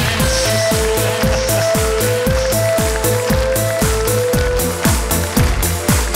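Instrumental intro of a pop song: a steady drum beat over a stepping bass line, with a short melody line of held notes on top and no singing yet.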